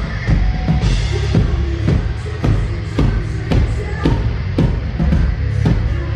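Live hard rock band playing loud: a drum kit keeps a steady beat of about two hits a second under electric guitar.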